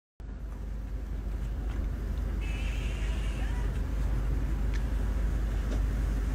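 A steady low mechanical rumble, like a running motor, slowly growing louder, with a few faint clicks over it.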